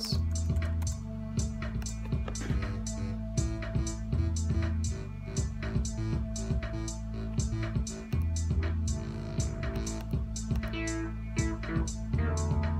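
A looping electronic beat: drum-machine drums and hi-hats, a synth bass line and a sustained synth pad, with the pattern repeating about every four seconds. Near the end a new synth tone joins in.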